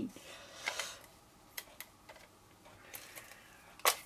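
Card stock being handled and pressed down by hand, with soft rustling and a few faint clicks and taps, the sharpest one just before the end.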